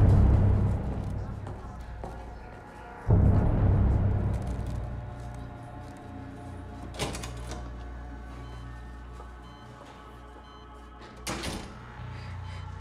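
Drama soundtrack of sustained low music that swells twice, at the start and about three seconds in, with two sharp door sounds, one about seven seconds in and one near the end.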